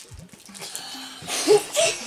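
Boys laughing in short bursts over background music.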